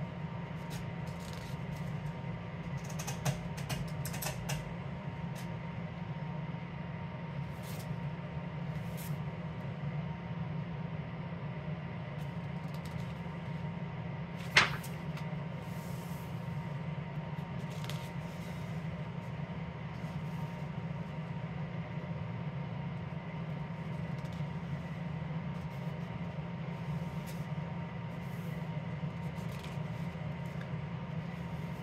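A house's heating system running with a steady low hum, while paper rustles and coloring-book pages are turned and smoothed by hand, with one sharp click about halfway through.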